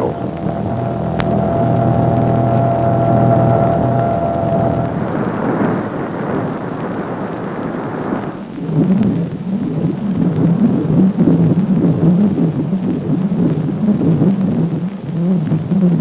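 AN/PPS-5 ground surveillance radar's audio target signal for a moving tracked vehicle, its characteristic sound in the operator's headphones. It opens as a steady droning tone, turns to a hiss after about five seconds, then becomes a low, wavering warble for the second half.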